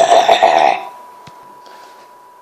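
A person making a rough, growling roar with the voice, as a monster sound effect; it stops a little under a second in.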